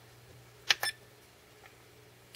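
Two short key-press beeps from a SkyRC MC3000 battery charger, a little under a second in and about a tenth of a second apart, as its menu buttons are pressed.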